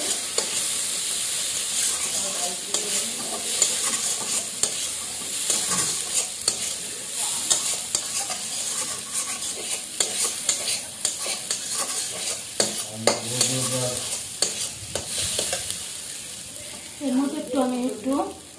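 Food sizzling in hot oil in a metal wok, with a metal utensil stirring and scraping against the pan in frequent sharp clicks.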